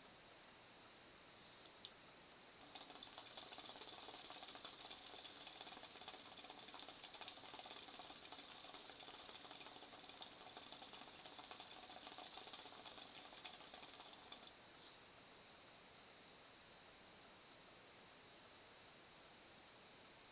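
Hookah water bubbling faintly as a long pull is drawn through the hose, starting about three seconds in and stopping about twelve seconds later.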